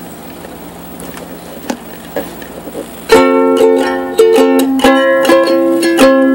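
Quiet room hiss with a few faint ticks, then about three seconds in a ukulele starts strumming chords in a steady rhythm, the introduction to a song.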